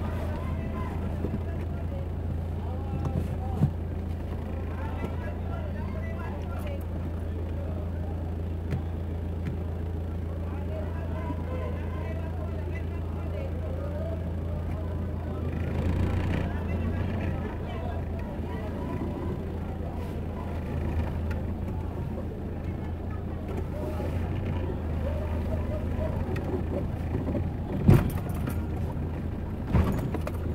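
Low, steady hum of a vehicle engine running in slow, crawling traffic, with scattered voices of passersby in a busy street and an occasional knock.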